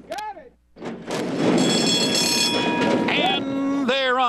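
Horse-racing starting gate springing open with a sudden loud clang about a second in, then the gate's start bell ringing for about three seconds over a wash of noise as the horses break.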